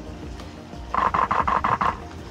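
Canon EOS R5 shutter firing a rapid burst, about nine frames in a second, over background music.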